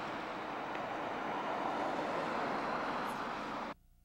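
Street traffic on a wet road: a steady hiss of cars and their tyres driving past close by. It cuts off suddenly near the end.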